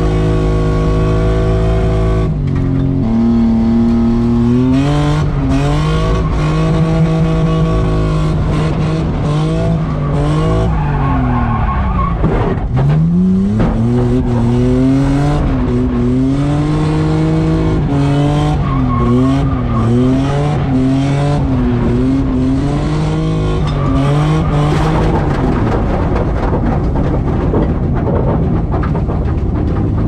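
Nissan Skyline R33 drift car's engine at high revs, heard from inside the cabin while it drifts, with tyres skidding. The revs are held steady for the first couple of seconds, then rise and fall over and over, with one deep drop and climb about twelve seconds in and a quick wavering pitch of throttle blips around twenty seconds in.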